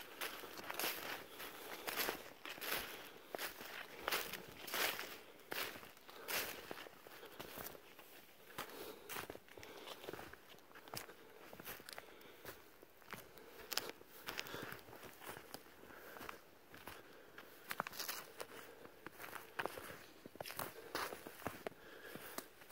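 A person's footsteps walking steadily through fresh snow over forest undergrowth, about one and a half steps a second.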